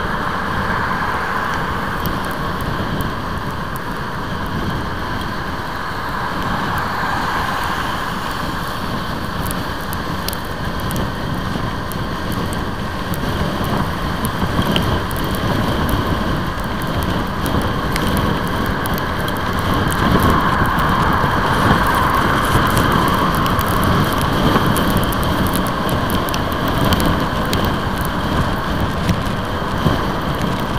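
Motorcycle riding in the rain: a steady rush of wind on the microphone and wet-road spray, with small ticks of raindrops hitting the microphone. It grows a little louder about two-thirds of the way through.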